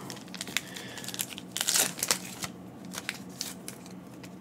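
Foil wrapper of a Panini Mosaic basketball card pack being torn open and crinkled, irregular sharp crackles with a busier burst a little before halfway.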